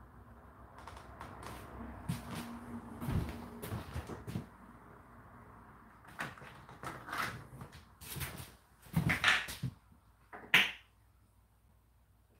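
Irregular knocks, clicks and rustling of things being handled, loudest as a few sharp knocks late on, then quiet.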